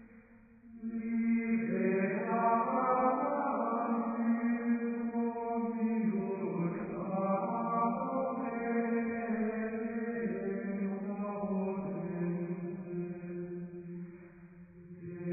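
Background chant music: voices holding long, slow notes. It swells in about a second in after a soft start.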